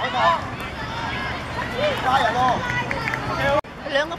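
Several voices shouting and calling out over one another, some of them high-pitched, during a children's five-a-side football game. The sound breaks off abruptly just before the end, then picks up again.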